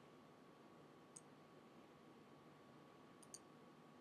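Near silence with faint computer mouse clicks: one about a second in, then two in quick succession just after three seconds, over a faint steady hum.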